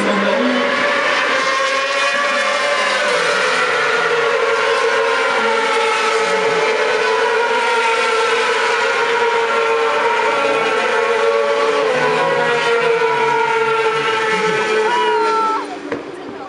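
600 cc supersport racing motorcycles running at high revs as they race past, a continuous loud, high-pitched engine note that slowly rises and falls in pitch. Near the end the pitch falls and the sound cuts off suddenly.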